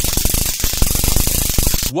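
Flashlight's built-in stun gun arcing: a loud, rapid electric crackle that cuts off abruptly just before the end.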